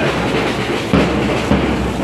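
Drum beating a steady rhythm, about two beats a second, over the noise of a crowd.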